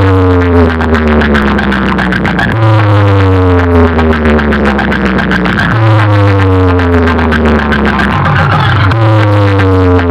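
Electronic dance music with heavy bass, played loud through a large stacked DJ speaker-box rig. A falling synth sweep over a bass note restarts about every three seconds.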